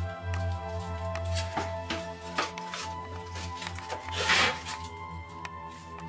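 Background music with steady held tones, over irregular crinkling and rustling of aluminium foil being handled. One louder, longer crackle comes about four seconds in.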